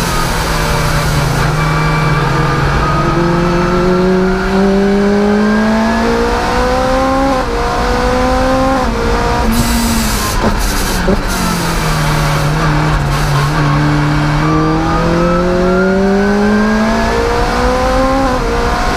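Supercharged Lotus Exige engine under hard acceleration, heard from inside the cockpit: the revs climb and step down at each upshift, fall away about ten seconds in as the car brakes and downshifts, then climb again in second gear to near 8000 rpm by the end.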